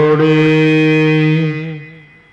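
A man's voice chanting Gurbani in the sung recitation style of the Hukamnama, holding one long steady note that fades out about a second and a half in.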